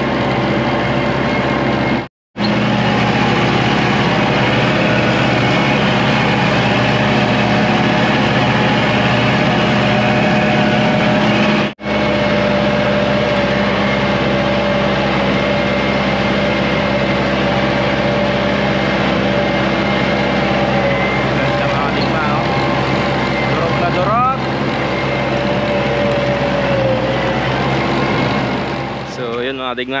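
Compact farm tractor engine running steadily under load while its rear rotary tiller churns dry field soil. The sound breaks off briefly twice, about two and twelve seconds in.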